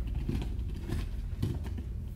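Bare feet shuffling and stepping on a judo mat and cotton gi fabric rustling, a few soft scuffs, over a steady low hum.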